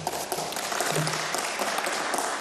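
Applause from a group of members of parliament, many hands clapping steadily in the chamber.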